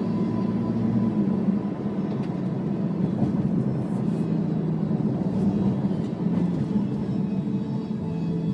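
Steady engine and road noise heard inside a moving car's cabin.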